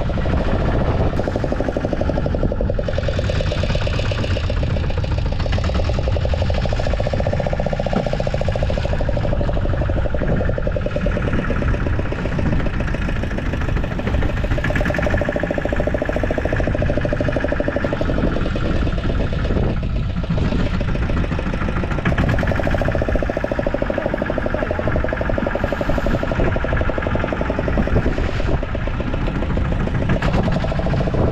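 Fishing boat's engine running steadily at idle.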